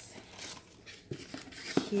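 Packaging being handled as a small subscription box is opened: a few light clicks and taps.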